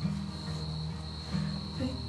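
Crickets chirping in a steady high drone, over soft background music of low held notes that change every half second or so.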